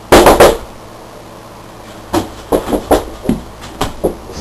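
Knocking on a door: a quick burst of loud knocks at the start, then a pause, then a scattering of lighter knocks and thuds in the second half.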